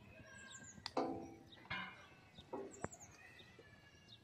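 Birds chirping and calling, the loudest call about a second in, with two sharp clicks, one of them a putter tapping a golf ball.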